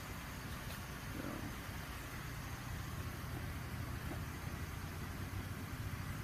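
A steady low hum with faint even hiss: indoor background noise with no distinct events.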